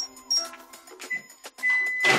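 Background music, with a microwave oven's touch-keypad beeping: two short high blips at the start, then a short beep about a second in and a longer single beep near the end.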